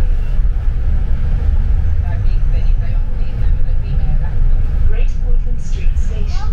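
Steady low rumble of a London double-decker bus under way, heard inside the upper-deck cabin.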